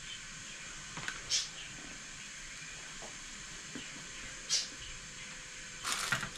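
Faint handling sounds: a few short rustles as washed bell peppers are wiped with a cloth towel and set on a baking tray, over a steady low hiss.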